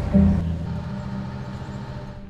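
Background music over the low, steady rumble of a ferry under way, which fades out gradually.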